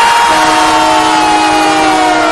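Hockey arena goal horn sounding loudly right after a goal is scored: several steady tones at once, one higher tone sliding slowly downward, over a haze of crowd noise.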